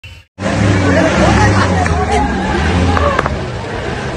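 Several people talking over one another, with a vehicle engine idling underneath until about three seconds in.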